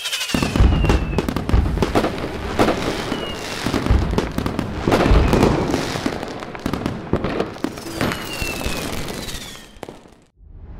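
Fireworks: dense crackling and repeated bangs with low booms, and several whistles falling in pitch as rockets go up, fading out near the end.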